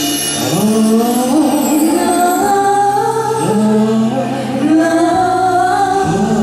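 Live ballad singing: voices holding a wordless 'ah' line in harmony, sliding up into long held notes, over an instrumental accompaniment.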